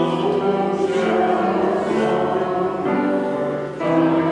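Several voices singing together in long held notes, with a brief break between phrases near the end.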